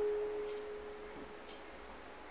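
A single guitar note ringing on after being plucked, its overtones already gone so that it sounds almost like a pure tone. It fades away a little past halfway, leaving only faint room hiss.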